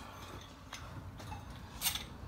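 Quiet workshop room tone with a faint low hum, and one brief sharp noise near the end.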